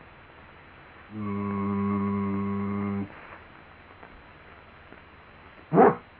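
A low male voice holding one steady hummed tone for about two seconds in a sound-poetry recitation, then a short vocal sound sliding down in pitch near the end.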